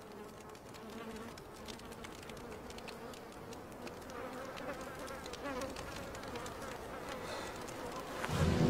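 Faint buzzing of flies, wavering in pitch, with scattered soft ticks.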